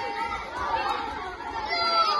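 A group of children chattering and calling out over one another, a steady mix of many high voices with no single voice standing out.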